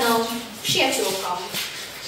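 A person's voice speaking in short phrases: one ends just after the start, another follows after a brief pause and trails off before the end.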